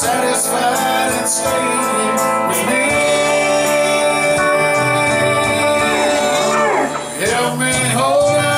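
Live band music: electric guitars with a man singing, in a country style. There is a sweeping slide down and back up in pitch near the end.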